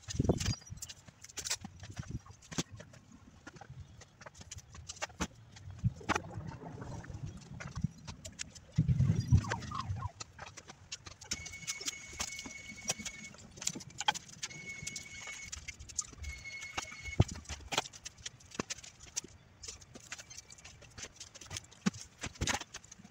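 Old wooden boards and sticks clattering and knocking as they are picked up, dragged and handled in yard debris, with rustling underfoot; the knocks are irregular and many. A thin, steady high tone sounds three times in the middle, a second or two each time.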